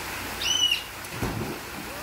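A short high-pitched squeal, then a boy landing in a backyard swimming pool with a dull splash about a second in, over the steady rush of a rock waterfall pouring into the pool.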